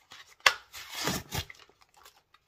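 Plastic and card blister packaging of a toy car being prised open by hand: a sharp snap about half a second in, then rustling and scraping for about half a second.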